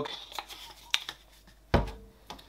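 A couple of light clicks, then a sudden dull thump near the end as a plastic bottle of sterilising fluid is set down on a stainless steel sink drainer.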